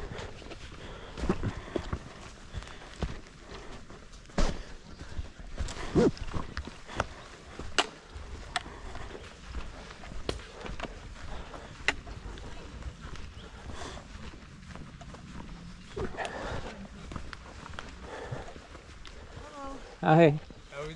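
Footsteps of a hiker walking on a rocky dirt forest trail, irregular steps and scuffs about every half second to a second. Faint voices come in briefly about three-quarters of the way through.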